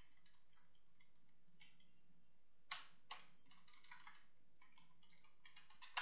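Faint, irregular computer keyboard key presses, a scattered handful of clicks with the strongest a little before halfway, over a faint steady low hum.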